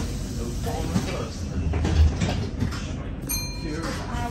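Inside a Tyne and Wear Metrocar: the car's steady low rumble, a heavy thump about two seconds in, and a brief high-pitched beep near the end.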